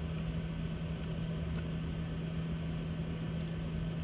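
Steady machine hum with a constant low drone, from the running Kodak NexPress digital production press.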